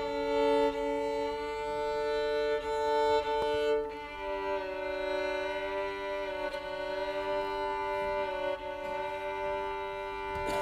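Violin sounding long held notes, two or three strings at once, with piano; the notes change to a new held pair about four seconds in.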